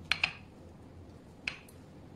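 A few sharp, small clicks and taps of a metal spoon against a ceramic serving dish as the dish is handled: a quick double click at the start, then one more about a second and a half in, each with a brief bright ring.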